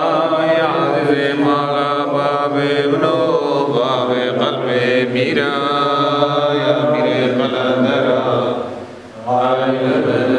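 Yazidi religious chanting by male voice, a long melodic prayer line over a steady low drone, pausing briefly for breath about nine seconds in before going on.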